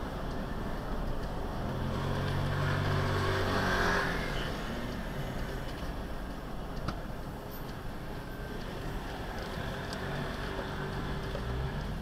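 A car driving on a city street, heard from inside the cabin through a dash cam: steady road and engine noise, with the engine hum swelling louder about two to four seconds in. A single sharp click about seven seconds in.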